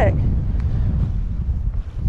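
Strong wind blowing across the microphone: a loud low rumble that dips briefly just before the end.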